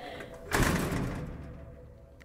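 Whoosh transition sound effect: a sudden noisy rush about half a second in that fades away over about a second and a half, over a faint steady tone.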